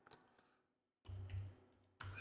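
Near silence with a few faint clicks, one just after the start and a soft cluster around the middle.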